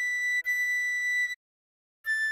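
Recorder melody with a pure high tone: the note B played twice, the second one held, over a soft low chord that stops about a second in. The sound then cuts off dead for about half a second before a slightly lower A starts at the very end.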